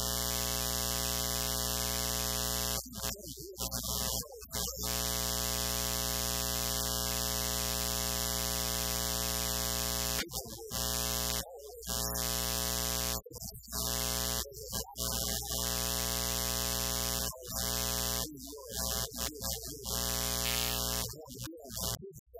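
Loud, steady electrical buzz in the recording's audio chain, a hum with many overtones and hiss on top. It drops out for short moments about a dozen times, where faint bits of the preacher's voice come through.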